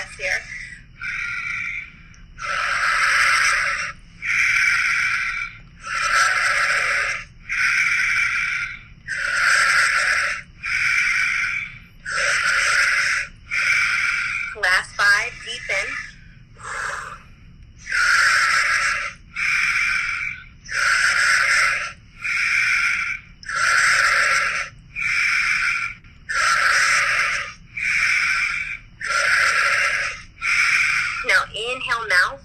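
Paced breathwork breathing: a long hissing inhale through pursed lips, like sipping air through a straw, alternating with a shorter exhale through the nose, about one full breath every three seconds.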